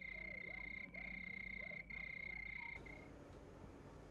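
Night-time ambience of frogs croaking under a steady high trill, which drops away about three seconds in.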